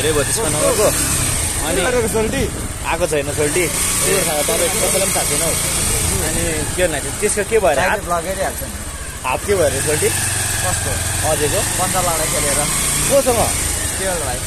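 Men talking over the steady low drone of a motorcycle engine as they ride.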